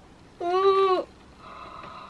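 A woman's short, high-pitched vocal cry, about half a second long, as she pulls her hair free of an automatic hair curler it had tangled in. A faint steady tone follows near the end.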